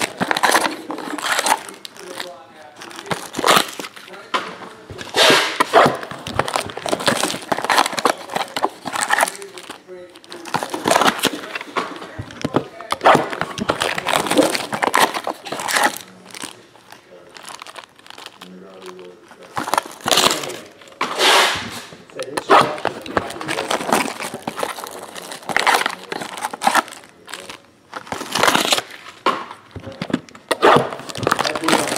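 Clear plastic wrap crinkling and tearing in irregular bursts as trading-card packs are unwrapped by hand.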